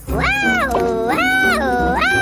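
High-pitched cartoon character voice wailing in repeated rising-and-falling cries, about one a second.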